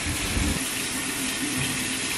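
Bathroom sink tap running steadily into the basin while a face is washed under it.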